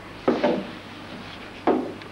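Two heavy footsteps on wooden floorboards, about a second and a half apart, each a dull thud with a short decay.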